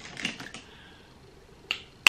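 Small sharp clicks and taps of makeup items being handled: a quick cluster in the first half-second and a single sharp click just before the end.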